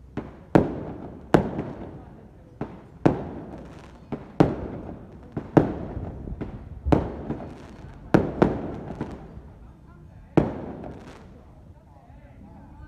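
Firecrackers or fireworks going off one at a time in irregular succession, about a dozen loud single bangs, each echoing off the street.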